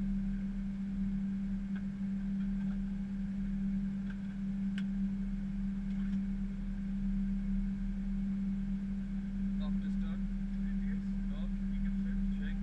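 Steady hum in the cabin of an Airbus A320 cockpit on the ground, one low steady tone over a lower rumble, with faint broken voices near the end.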